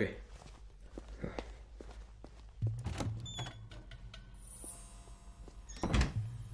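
Footsteps on a hard floor, about three a second, then a steady low hum sets in, and a loud thud comes at the end.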